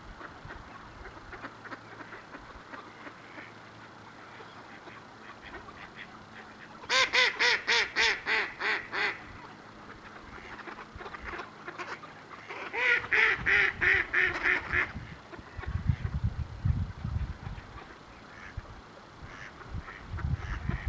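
Flock of mallards calling: soft chuckling calls, broken by two runs of loud, evenly spaced quacks, about eight or nine each. One run comes about a third of the way in and the other just past the middle.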